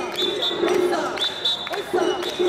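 Festival hayashi from a dashi float: repeated drum thumps with high metallic ringing, among the voices of the street crowd.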